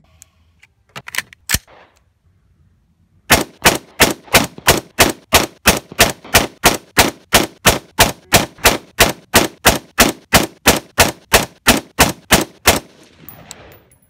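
AR-15 rifle with a Rosco Purebred barrel firing 5.56 mm PMC X-TAC 55-grain rounds. A few sharp reports come about a second in, then a fast, evenly spaced run of shots follows, about three a second, stopping shortly before the end: a 30-shot group cut down so the shots come back to back.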